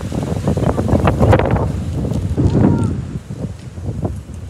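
Wind buffeting the microphone in irregular gusts, with indistinct voices in the background.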